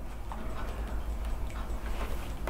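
Quiet room with a steady low hum, and a few faint clicks and rustles of a photograph and a paper photo album being handled.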